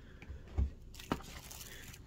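Faint packaging handling: a soft thump about half a second in, a light click about a second in, then a faint crinkling rustle as paper and a cellophane-wrapped card deck are handled in a cardboard box.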